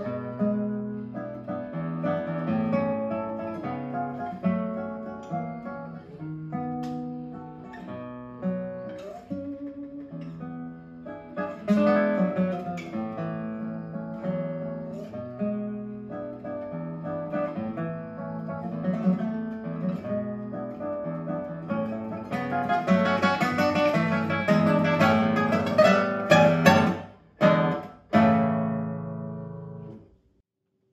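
Solo classical guitar playing a piece, its notes and chords running on, growing fuller and louder in the last third. It ends with a few loud strummed chords, each stopped short, and a final chord that rings and dies away.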